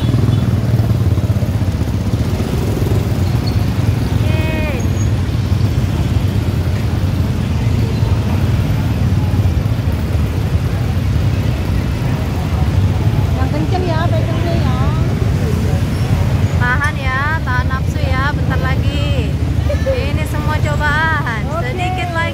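Motor scooters crawling through a crowded street: a steady low engine drone, with people's voices around it, heard briefly about four seconds in and more often in the last third.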